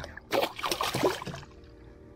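A small hooked fish splashing and thrashing at the water's surface as it is lifted on the line beside the boat, in irregular splashes that die away after a little over a second.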